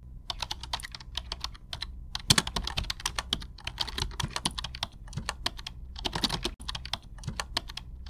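Keyboard typing sound effect: rapid, irregular key clicks, with a short pause about two seconds in.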